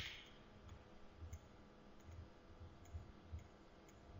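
Near silence with a few faint clicks scattered through, after a short hiss dies away at the very start.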